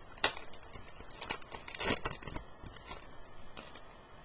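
Foil wrapper of a baseball card pack crinkling and tearing open, with the cards being handled. It makes a series of sharp crackles and rustles: one near the start, the loudest clusters about one and two seconds in, and lighter ones after.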